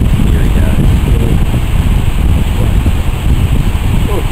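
Wind buffeting the camera microphone: a loud, uneven rush, with faint voices underneath in the first second or so.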